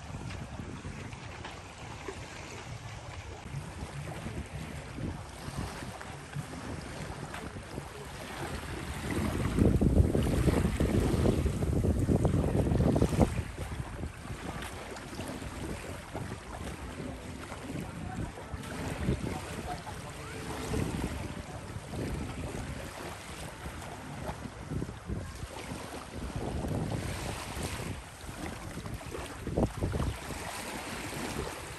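Wind buffeting the microphone, with a stronger gust of about four seconds near the middle, over small waves lapping on a sandy shore.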